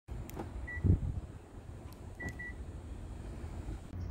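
The remote key of a 2015 Hyundai Santa Fe is pressed twice. First comes a click, a single short beep from the car and a loud clunk from the door locks. About a second later there is another click and then two short beeps.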